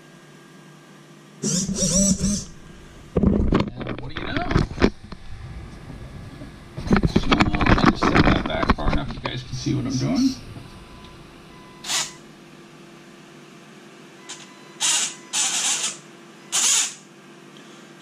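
A man laughs, the camera is handled with knocks and rustling, then the RC rock crawler's electric motor and drivetrain run in a few short throttle bursts near the end. The motor is spinning the wrong way because its wires are connected reversed.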